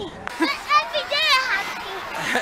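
A young child's high-pitched voice, excited chatter and squeals rising and falling in pitch.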